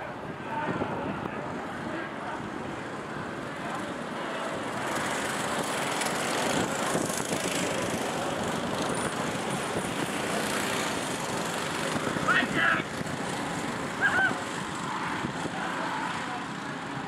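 Several go-kart engines running together as a pack of karts laps the track, the sound building about four seconds in and holding near full strength. Brief snatches of a voice cut through near the end.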